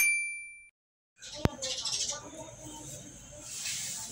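A bright chime sound effect rings once and fades out in under a second. After a short silence comes low room noise with a single sharp click about a second and a half in.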